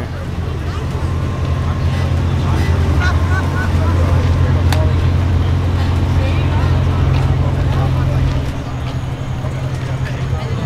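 A car engine running with a steady low rumble, with voices chattering in the background.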